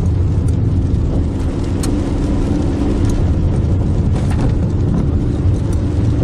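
Steady engine and tyre noise heard from inside a car's cabin as it drives along a wet road in the rain, a constant low hum with a few faint clicks.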